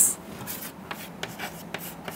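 Chalk writing on a chalkboard: a run of short taps and scrapes as letters are written.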